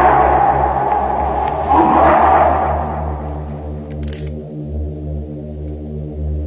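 A loud voice calling out twice into the night forest, each call about a second and a half long, over a low steady droning music bed. A brief rustle comes about four seconds in.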